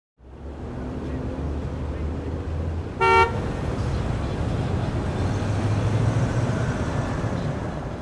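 Street traffic noise with a steady low rumble of passing vehicles, and one short car horn toot about three seconds in.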